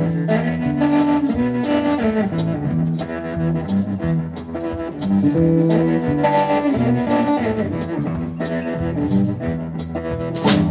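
Live blues band playing an instrumental passage: an electric bass line under electric guitars, with a drum kit keeping a steady beat.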